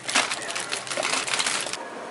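Dense crinkling, rustling and clicking of snack packets and a shopping cart being handled by a toddler; it cuts off abruptly near the end.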